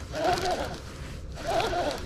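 Baitcasting reel being cranked to bring in a hooked fish, its gears giving a whine that rises and falls in pitch in spells of about half a second.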